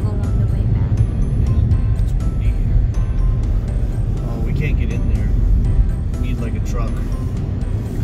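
Steady low rumble of tyre and engine noise heard inside a moving car's cabin on a snow-covered highway.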